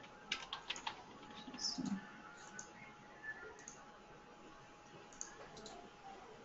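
Faint computer keyboard clicks: a quick run of several keystrokes in the first second, a short low sound about two seconds in, then a few scattered clicks.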